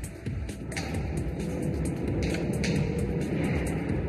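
Background music score: a low, steady drone with scattered light percussive ticks.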